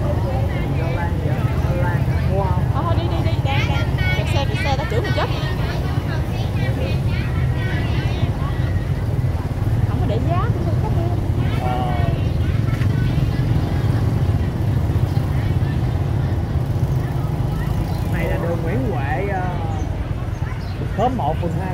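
Motorbikes running slowly through a crowded street market: a steady low engine rumble throughout, with the voices of shoppers and vendors breaking in several times.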